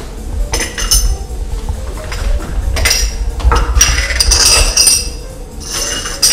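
Porcelain espresso cups and saucers clinking in several bursts as they are handled on a wooden table.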